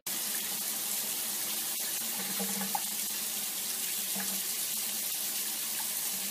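A steady, even hiss, strongest in the high range, that cuts off suddenly near the end.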